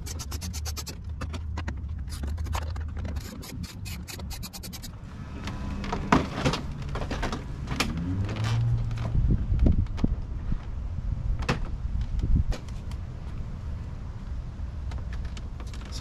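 Socket ratchet clicking fast, about ten clicks a second in several runs, as it backs out the bumper bolts. After about five seconds the clicking stops and gives way to knocks and rattles of the loosened plastic bumper and grille trim being handled.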